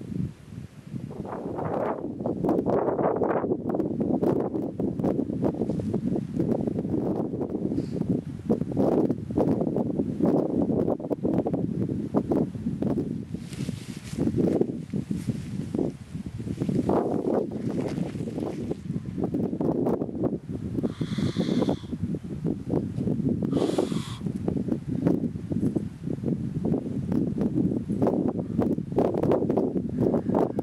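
Wind buffeting the microphone in loud, uneven low gusts that rise and fall, with a few brief higher rustles.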